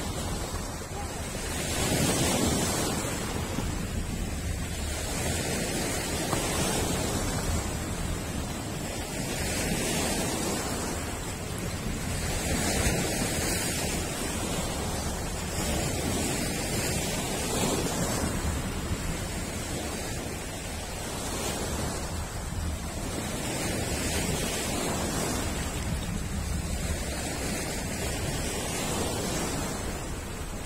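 Sea waves washing onto a rocky, pebbly shore. The surf swells and ebbs every few seconds.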